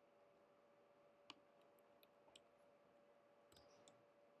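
Near silence with a few faint, sharp computer keyboard keystrokes scattered through it, the strongest about a second in and a short cluster near the end, over a faint steady hum.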